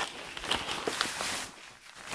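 Fabric rustling and swishing as a feather-and-down duvet and its cotton cover are pulled and handled, with a few light clicks; it dies down about a second and a half in.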